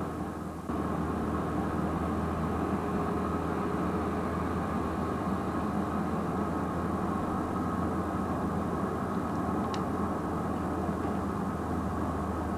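A steady low rumble with a constant hum beneath it. It drops away briefly in the first second, then runs on evenly.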